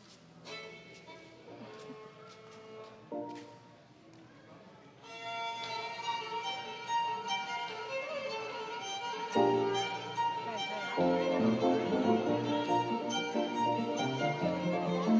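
Live fiddle and piano playing an instrumental tune. It starts soft with sparse notes, fills out about five seconds in, and grows louder near the end as lower chords join.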